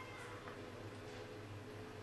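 GBC H220 laminator running with a faint steady hum, its heated rollers slowly feeding a paper-covered copper board through for toner transfer.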